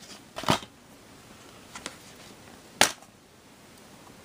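A plastic DVD eco case being handled and opened: a couple of knocks about half a second in, faint ticks, then one sharp plastic click just before three seconds as the case snaps open.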